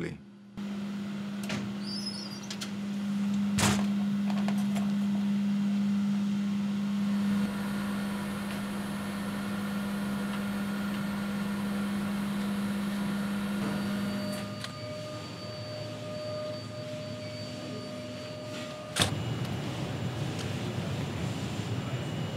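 Steady low hum of plant-room equipment, with a single sharp knock about four seconds in. Past the middle the hum drops away, leaving a quieter whir with faint thin tones. Near the end a louder rushing room noise starts abruptly.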